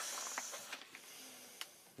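Cardboard backing card and plastic blister of a toy figure's packaging scraping under the hands as it is started open: a soft hiss, loudest in the first half second, then fading, with a few faint ticks.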